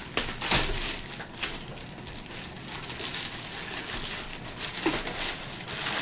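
Clear plastic wrap crinkling and rustling as it is pulled off a karaoke machine, loudest about half a second in.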